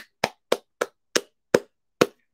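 One person clapping his hands: about seven sharp claps, roughly three a second, slowing slightly.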